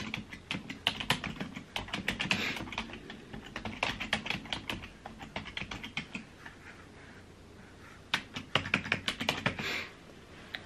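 Typing on a computer keyboard: runs of keystrokes, a pause of about two seconds, then a quick run of keys near the end, a long passcode being typed in again after a wrong entry.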